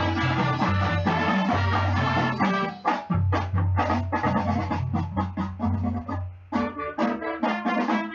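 High school marching band playing: brass and winds hold full, sustained chords over a low bass line, then from about three seconds in the band plays a run of short, punched chords separated by brief gaps.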